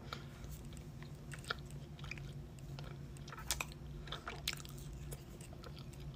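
Person chewing a mouthful of chunk cornstarch, with scattered soft crunches and clicks over a steady low hum.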